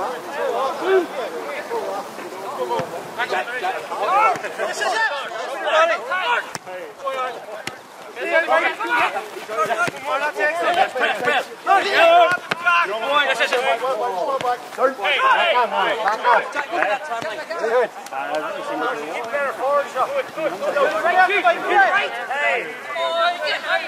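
Several voices talking and calling out across the pitch during play, overlapping and too indistinct to make out the words.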